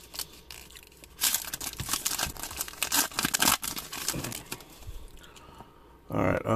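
Foil trading-card pack wrapper crinkling and tearing in the hands as the pack is opened, in irregular crackles that are densest between about one and four seconds in.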